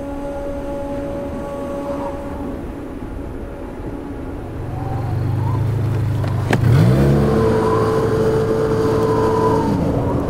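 A steady musical drone fades away, and snowmobile engine noise builds from about halfway. About two-thirds of the way in there is one sharp hit, and the engine revs up with a rising pitch, then runs on steadily.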